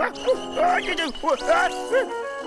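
Cartoon background music with held chords, under a run of quick rising-and-falling cries from a cartoon character, about four a second.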